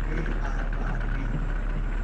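Heavy military vehicle engines running steadily in a low, even rumble as the missile-launcher truck drives past.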